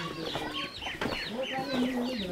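Chickens calling, a rapid run of short, high, falling calls.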